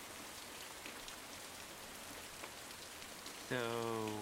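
Steady rain falling, an even hiss with scattered droplet patter. Near the end, a man's voice says a drawn-out "So".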